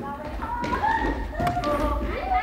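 A volleyball struck by hand during a rally, one sharp smack about one and a half seconds in, echoing in a large hall, while players' voices call out across the court.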